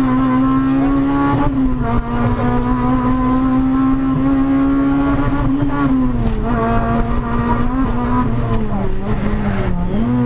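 Honda Civic rally car's four-cylinder engine heard from inside the cabin, running hard at high revs. It holds a steady high note for several seconds, then eases off and drops in pitch over the second half, and the revs jump back up quickly at the very end.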